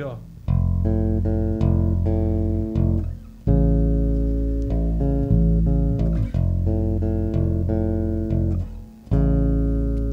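Five-string electric bass playing chords in the upper register, moving a major third between A and F with both chords major. It plays three phrases, starting about half a second in, about three and a half seconds in, and near the end.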